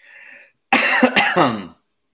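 A man coughing and clearing his throat because coffee went down the wrong pipe: a short breath in, then about a second of loud, rough throat-clearing.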